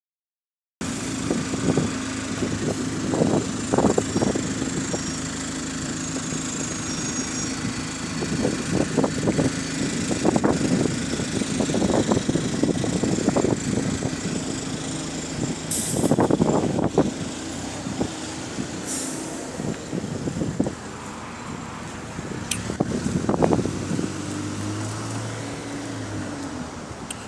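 Alexander Dennis Enviro200 Euro 5 single-deck bus idling at a high RPM, a steady engine tone with repeated swells as it moves off. Two short air hisses come around the middle, and the engine sound drops away after about 21 seconds as the bus leaves.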